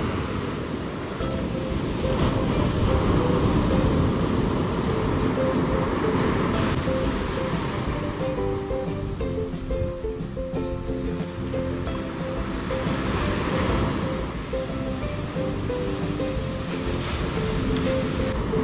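Background music of held notes laid over the steady wash of ocean surf breaking on the beach.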